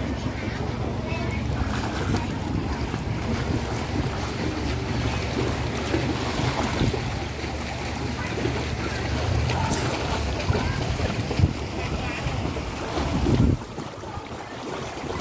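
Pool water splashing as a child swims and kicks, with wind buffeting the microphone as a low rumble that drops away suddenly near the end.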